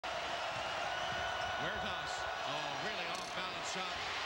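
A basketball being dribbled on a hardwood court over the steady din of an arena crowd, heard through a TV broadcast; a voice comes in about a second and a half in.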